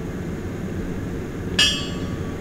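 A single sharp metallic clink about one and a half seconds in, ringing briefly, over a steady low background rumble.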